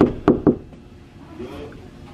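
Knuckles knocking three times in quick succession on a bedroom door, in the first half second.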